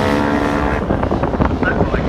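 Classic racing motorcycle engine running at high revs as the bike goes by on the track, its note dying away about a second in. Wind buffets the microphone through the rest.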